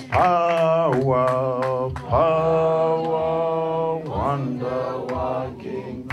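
A voice singing a slow worship song in long, held notes of one to two seconds each, sliding up into each note, with a steady low note sustained underneath.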